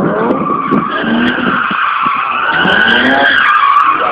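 Car tyres squealing continuously on asphalt as the car is thrown through tight autoslalom turns, the squeal wavering in pitch, while the engine revs rise and fall several times between gear changes.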